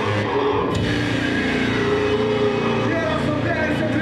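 Live heavy rock band playing loud, with a vocalist singing or shouting into a microphone over distorted guitar and drums.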